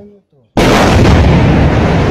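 Demolition blast bringing down a multi-storey concrete building. After about half a second of near silence, a sudden, very loud blast sets in and carries on as a continuous heavy rumble of the structure collapsing.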